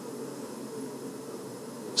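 Steady low room noise of a lecture hall: an even background hum with no distinct events.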